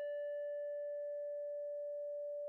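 Yamaha YM3812 (OPL2) FM sound chip sounding a steady sine tone with a faint overtone: the frequency modulation has died away under its envelope, leaving only the carrier's sine wave.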